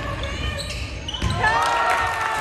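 Basketball dribbled on a hardwood gym floor during live play, with spectators' voices and a single held shout in the second half.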